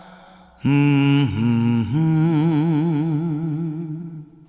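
A male singer's wordless hummed vocal in a film-song intro: a new phrase enters about half a second in with a couple of short pitch steps, then settles into one long note held with a wide vibrato, fading near the end.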